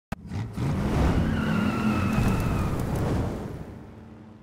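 A car engine revving up and down, with a high tyre squeal over the middle, the whole sound fading away near the end.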